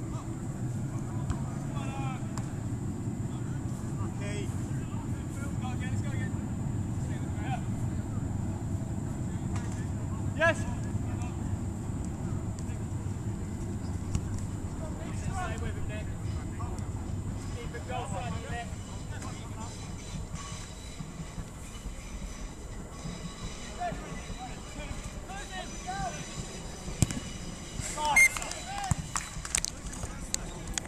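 Distant shouts and calls of players in a small-sided football match, heard in short scattered bursts over a steady low rumble that eases after about twenty seconds. A few sharp knocks come through, the loudest near the end.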